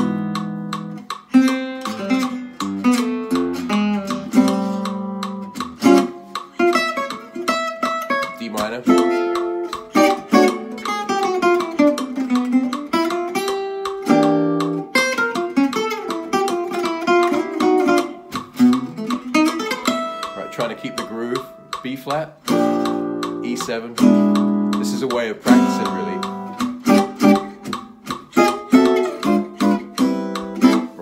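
Oval-hole gypsy jazz acoustic guitar played with a pick, mixing fast single-note lead runs with chord stabs over an A minor, D minor and E7 progression. About ten seconds in there is a run that falls and then climbs back up.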